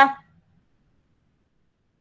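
The tail of a drawn-out spoken word fades out in the first quarter second, followed by near silence.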